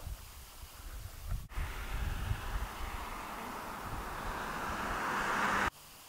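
Wind buffeting the microphone outdoors, with a low rumble and a rushing noise that swells over several seconds and then cuts off suddenly near the end.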